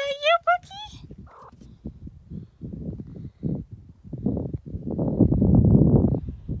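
A domestic cat meows once, a rising cry of about a second. Low scuffing and rumbling noise follows and builds louder near the end.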